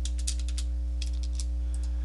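Computer keyboard keystrokes, two quick runs of clicks as a number is typed in, over a steady electrical hum.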